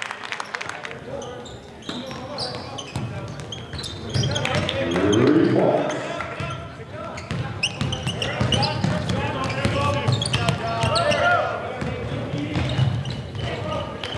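A basketball bouncing on a hardwood gym floor amid shouting voices, with one loud rising call about five seconds in.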